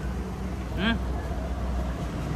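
Steady low running rumble of a vehicle, with one short vocal sound just under a second in.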